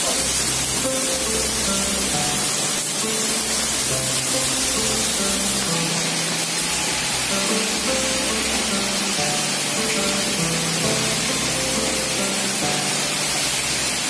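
Heavy rain hissing steadily, with music playing over it: a melody of held notes stepping from one pitch to the next over a bass line.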